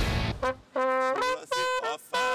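A trumpet playing single held notes: a short note, then a longer low note, then a note an octave higher near the end that wavers slightly in pitch as it starts.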